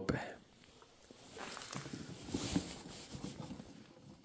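Faint rustling with small clicks and knocks, from handling the camera and a battery charger's cables, starting about a second in and fading out shortly before the end.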